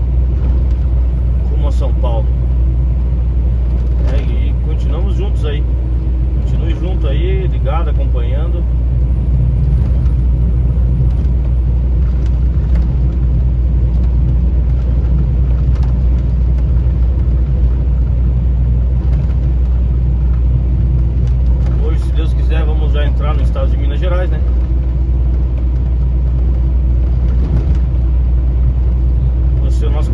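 Steady low drone of a vehicle's engine and road noise heard from inside the cab while cruising on a highway, with a constant hum.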